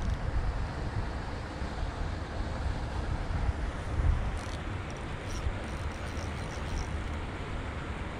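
Wind rumbling on the microphone: a steady low buffeting noise, with a few faint high ticks in the middle.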